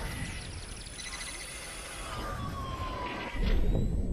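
Electronic logo-intro sound effects: synthetic sweeps and steady high tones, with a slowly falling tone about halfway through and a low rumbling swell that gets louder near the end.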